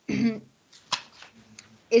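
A woman clears her throat once, briefly, followed about a second later by a short click; her speech starts again near the end.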